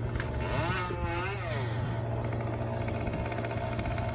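An engine running steadily with a low drone. About a second in, a pitch briefly rises and falls.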